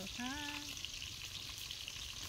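Chicken frying in hot oil: a steady, even sizzle.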